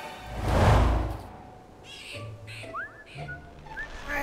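Cartoon transition whoosh that swells loudly and fades within the first second, followed by short rising bird-like chirps over soft music.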